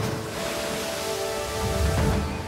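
An ocean wave breaking against a rocky shore, a rush of surf and spray that fades out near the end, over background music with long held notes.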